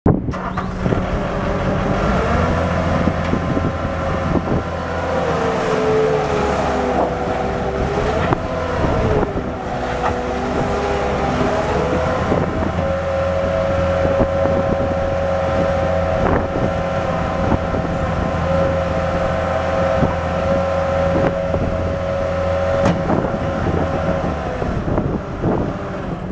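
Bobcat S650 skid-steer loader's diesel engine running steadily under work, with a hydraulic whine that wavers up and down over the first dozen seconds as the loader turns and works its lift arms and bucket, then holds one steady pitch until near the end.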